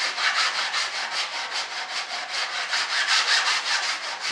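Hand sanding on wood: sandpaper rubbed quickly back and forth in short, even strokes, about five a second. It is the shaping of a hard square hardwood dowel used as a model stabilizer's trailing edge.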